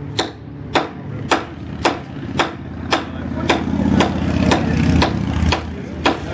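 Heavy knife blade chopping into a wooden 2x4, sharp strikes about two a second, eleven in all. A low engine drone builds up under the strikes in the second half and drops away near the end.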